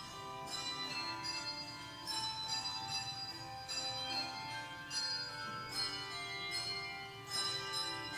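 Handbell choir playing a piece: many struck bell notes ringing on and overlapping, with new notes struck every second or so.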